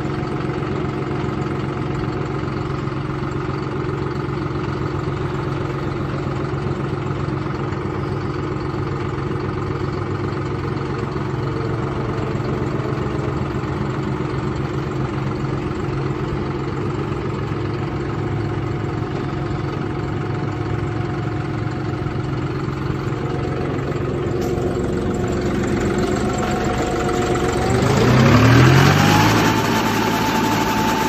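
2015 John Deere 5055E tractor's three-cylinder diesel engine idling steadily, then revving up near the end, its pitch rising over a couple of seconds and holding at a higher speed.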